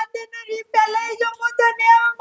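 A high-pitched singing voice carries a melody of short held notes, with small breaks between phrases, over background music.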